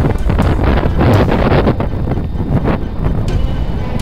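Gusty wind blowing on the microphone, a dense steady rumble with irregular surges, with music playing underneath.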